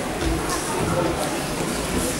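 Indistinct voices of onlookers and corners calling out in a boxing gym during a bout, with a couple of faint slaps of gloves landing.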